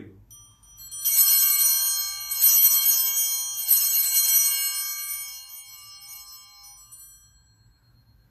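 Altar bells rung three times, about a second and a half apart, at the elevation of the host after the words of consecration; each ring is a cluster of high, bright tones that die away over the last few seconds.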